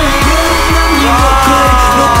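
Pop song performed live: male vocals over a heavy electronic bass beat that drops in right at the start.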